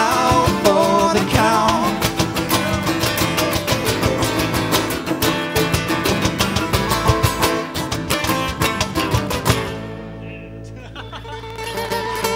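A live band with acoustic guitar plays the last bars of a song. About ten seconds in it stops on a final hit, and a chord rings on and fades away.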